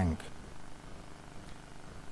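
A man's voice finishes a word, then a pause holding only the faint steady hum and hiss of a large hall's room tone.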